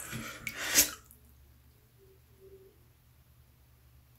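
A brief rushing, hissing noise in the first second, then near silence.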